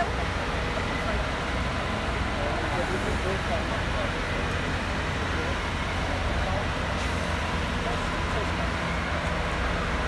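Fire engines standing with their engines running, a steady low rumble, with people talking in the background.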